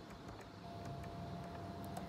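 Faint background rumble, with a thin steady tone starting about half a second in.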